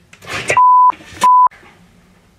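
Two loud censor bleeps, steady 1 kHz tones of about a third of a second each, blanking out a cry after an electric shock from an ignition coil. A short yell comes just before the first bleep.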